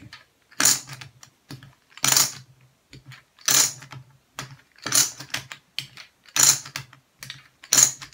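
Lightweight, lower-quality poker chips dropped from the fingers back onto a stack, a short clicking clatter six times, about once every second and a half.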